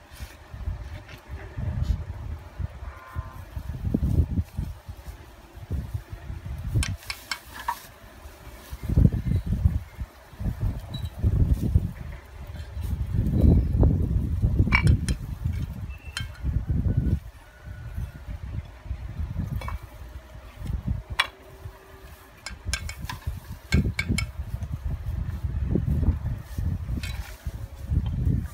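Wind buffeting the microphone in uneven gusts, with scattered sharp knocks and clinks of bricks being handled.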